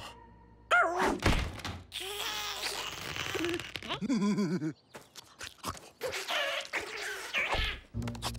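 Cartoon sound effects: several knocks and thuds, and an animated animal's short, wordless squeals and grunts that bend in pitch, about a second in and again around four seconds.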